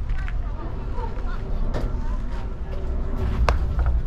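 Wind rumbling on the microphone and faint voices, with one sharp, briefly ringing smack about three and a half seconds in as the pitched baseball arrives at home plate.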